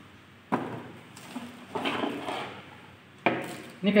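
Handling of a cardboard product box on a wooden tabletop: a sharp knock about half a second in and another near the end, with rustling and scraping between as the dome camera and its cable are taken out.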